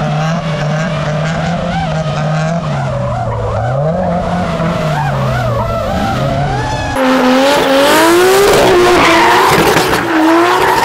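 Drift car engine revving up and down as it slides, with tyres skidding. About seven seconds in, the sound cuts to a louder, closer drift: the engine climbs in pitch and the tyres screech.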